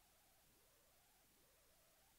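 Near silence: a faint steady hiss with a low hum underneath.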